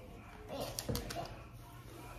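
A stick of butter set down into an enamelled pot, with a few soft short knocks and clicks, over a faint steady low hum.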